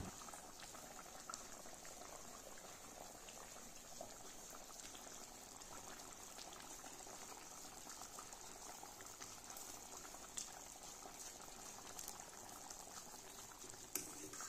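Pork curry simmering in a wok, a faint steady bubbling with small scattered pops, and one sharper click about ten and a half seconds in.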